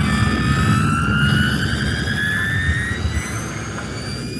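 Light-show soundtrack over loudspeakers: a synthesizer tone with overtones rising slowly and steadily in pitch, over a low rumbling background.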